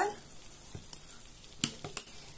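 Glass pot lid set back onto a frying pan, clinking twice near the end, over a faint sizzle from the pan.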